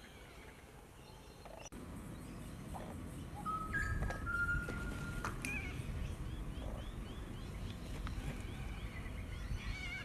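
Birds calling over a low outdoor rumble that grows louder after a short dropout about two seconds in: one long whistled note around the middle, then a quick run of short chirps, about five a second.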